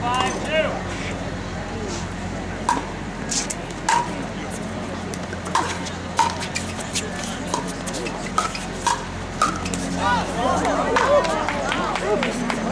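Pickleball rally: paddles striking the hard plastic ball, a series of sharp pops about a second apart, each with a brief ringing tone. The rally ends near the end, where voices take over.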